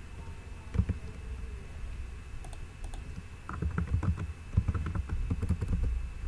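Typing on a computer keyboard: a single keystroke about a second in, then a quick run of keystrokes through the second half.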